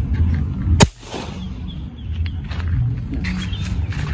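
A single sharp shot from a Pasopati AK Mini Lipat semi-PCP air rifle, charged with four pumps, about a second in. It is fired through a chronograph, which reads 954.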